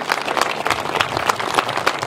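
Audience applauding, many hands clapping in a dense, irregular patter.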